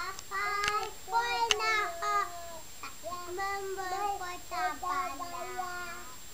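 A young child singing a song in a high voice, in short phrases of held and sliding notes with a brief pause near the middle.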